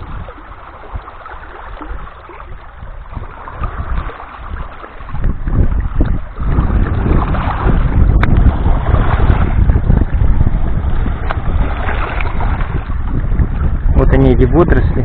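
Small waves washing and splashing over the stones at the edge of a rocky shore, with wind buffeting the microphone, much louder from about five seconds in.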